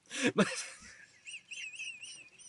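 A man's stifled, high-pitched giggles through the hand over his mouth. A breathy hiss comes first, then about a second in a quick run of short squeaks that rise and fall in pitch.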